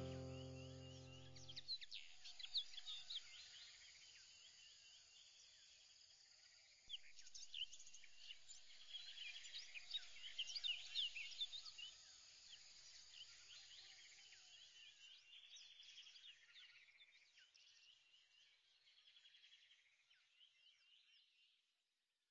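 Faint birdsong: many short, quick chirps that thin out and fade away toward the end. A music track stops about two seconds in.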